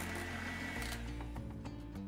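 Electric hand mixer with wire beaters running in a glass bowl of butter, sugar and egg batter whipped pale and fluffy, then cutting out about a second in. Soft background music carries on underneath.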